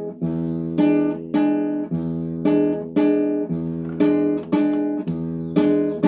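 Nylon-string classical guitar playing an E7 chord in waltz time: an open sixth-string bass note followed by two upward brushes on the second and third strings, the pattern repeating about every second and a half.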